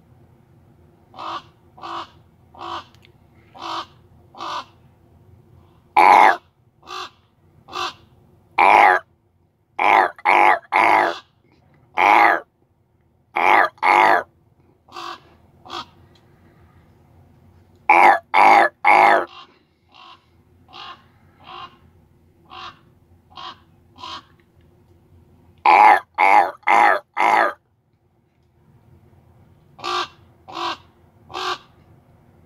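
Large black corvid calling over and over at close range. A string of short, quieter calls comes about a second apart, then loud, harsh caws in runs of two to four, alternating with softer calls.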